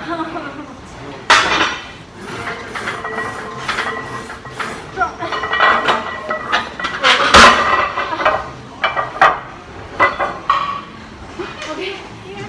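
Iron weight plates clanking against the steel loading horns of a plate-loaded leg press as a plate is pulled off for the next drop. Several sharp metal clanks, the loudest about seven seconds in.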